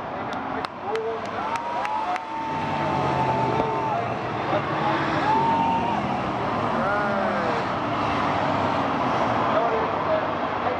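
Bomber-class stock cars racing on an oval track, the pack's engines swelling as the cars go by, with crowd voices over them. A few sharp clicks in the first two seconds.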